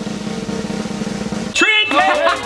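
A snare drum roll, the kind edited in as a build-up to a reveal, which cuts off about one and a half seconds in as loud voices break in.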